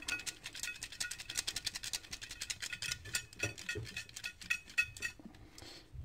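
Folded paper slips rattling inside a cup as it is shaken hard: a quick run of dry clicks that stops about five seconds in.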